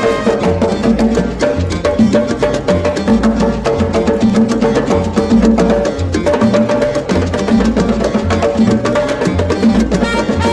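Salsa descarga in a percussion-led passage: rapid hand-drum and wood-block strikes over a pulsing bass line, with the horns silent.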